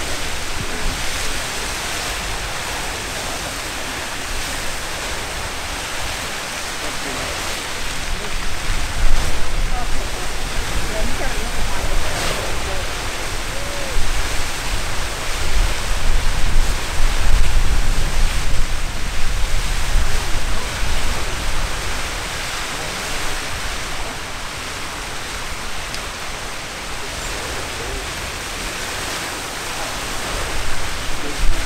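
Castle Geyser erupting in its water phase: a steady, dense rushing of the water column and steam from its cone, with a deeper rumble that swells louder through the middle.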